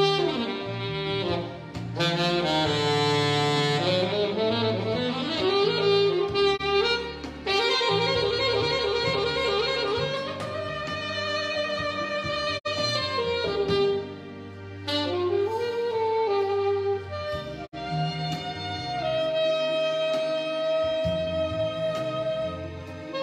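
Alto saxophone playing a jazz melody through a microphone, with upward slides and held notes, over a recorded backing track with a bass line.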